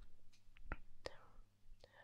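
Faint breath and a few small mouth clicks in a pause between spoken phrases, over a low steady hum.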